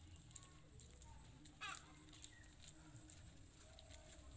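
Faint clicking and rustling of dried maize kernels being rubbed off the cobs by hand and dropping onto the pile, with one louder rasp just under two seconds in.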